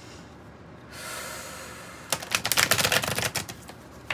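A deck of tarot cards being shuffled by hand. A soft sliding hiss starts about a second in, then a quick, dense run of card clicks lasts a little over a second.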